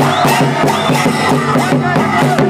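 Folk dance music: drums beating a steady rhythm of about four strokes a second, with voices singing over it and a crowd.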